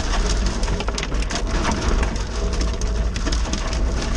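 Off-road 4x4 driving slowly along a rough, rutted track: a low engine rumble under constant crackling with many small knocks and clicks from the tyres on the stony ground and the vehicle jolting.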